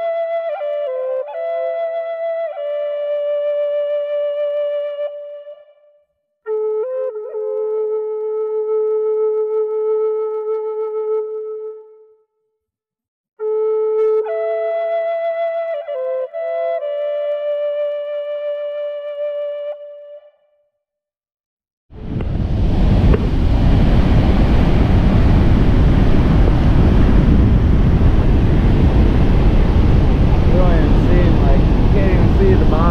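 A flute-like wind instrument playing a slow melody of long held notes with short slides, in three phrases separated by brief silences. About two-thirds of the way through, a loud, steady rushing noise comes in and lasts to the end.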